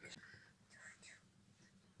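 Near silence: room tone, with a faint soft sound about a second in.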